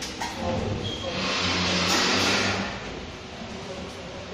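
Stainless-steel lid of a washing fastness tester being lifted open, with a scraping swish lasting about a second and a half, over a low background hum.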